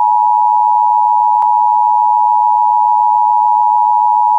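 A steady, loud test tone at about 1 kHz, the reference tone that goes with a colour-bars test pattern. There is one faint click about a second and a half in.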